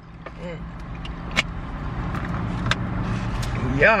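Steady low hum of a car idling, heard from inside the cabin, with a few faint clicks.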